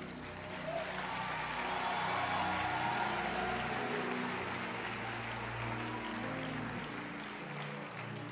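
Large congregation applauding, swelling over the first two to three seconds and then slowly easing off, with soft background music underneath.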